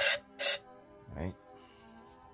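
Two short bursts from an aerosol spray can, the first right at the start and the second about half a second later, blowing dirt out of a Crown Victoria spark plug well before the plug is removed.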